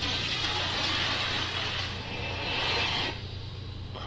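Horror film soundtrack: an even, rushing noise effect that cuts off suddenly about three seconds in, over a steady low hum.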